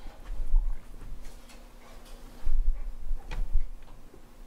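Handling noise at a lectern as a laptop is worked: a few light clicks, with two dull low thumps, one about half a second in and one around two and a half seconds, over a faint steady hum.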